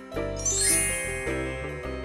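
A bright, tinkling chime sound effect about half a second in, over held notes of background music.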